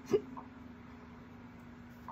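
A woman's single short hiccup-like catch in the throat just after the start, over a steady low hum.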